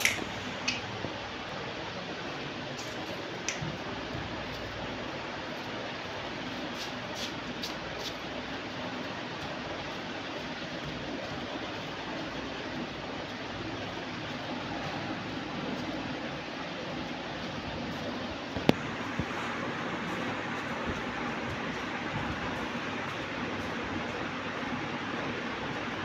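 Steady background room noise, an even hiss, with a few faint clicks in the first several seconds and one sharp click about three-quarters of the way through.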